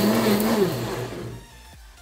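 Blendtec blender motor running on a thick bean-and-water slurry with a steady hum and whirr, then winding down and fading out over about a second and a half as its blend cycle finishes.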